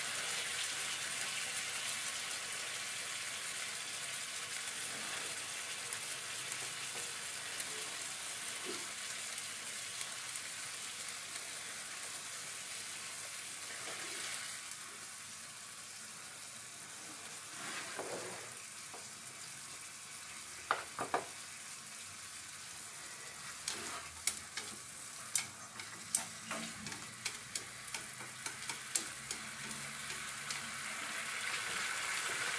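Pork slices and onions sizzling in ginger sauce in a de Buyer carbon-steel frying pan, a steady frying hiss that eases a little about halfway through. In the second half, a run of sharp clicks as wooden chopsticks knock against the iron pan while lifting the meat out.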